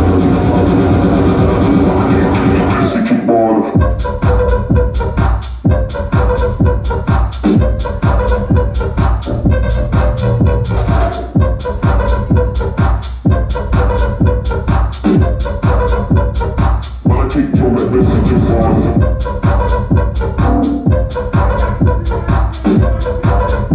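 Loud electronic dance music from a live DJ set. About three seconds in, the high end briefly cuts out in a short filtered break, then a new section with a steady beat comes in.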